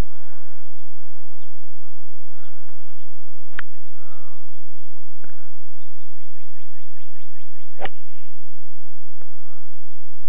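Two crisp strikes of a golf club hitting a ball off the turf, about four seconds apart.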